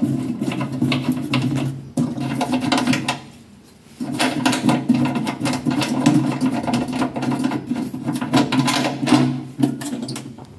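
A small machine running with a steady hum and a fast, even clatter. It stops for about a second around three seconds in, then starts again.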